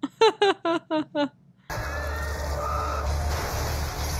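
A woman laughing in five short, quick bursts of "ha" against near silence. About a second and three-quarters in, the TV episode's soundtrack comes back as a steady low noise.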